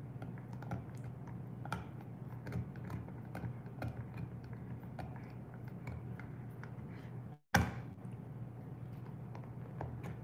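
Bernese mountain dog chewing on a bone: irregular soft crunches and clicks over a steady low hum. About seven and a half seconds in, the sound drops out briefly and comes back with a sharp click.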